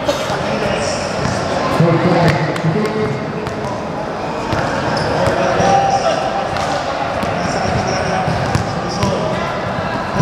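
A basketball bouncing on the court floor as repeated short knocks, over indistinct chatter of players and spectators echoing in a large hall.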